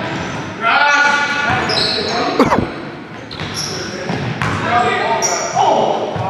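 Basketball game in a large gymnasium hall: the ball bouncing, players calling out, and short high squeaks, with a sharp impact about two and a half seconds in.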